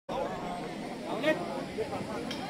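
People's voices talking at a distance, with one louder call a little over a second in.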